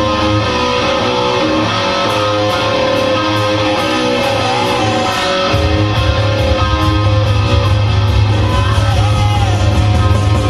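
Hard rock song playing, led by electric guitar. The bass and drums come in heavier about five and a half seconds in.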